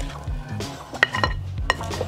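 A wooden spatula tossing seasoned chunks of chicken and potato in a glass mixing bowl, with a few sharp clicks of wood against glass, over background music.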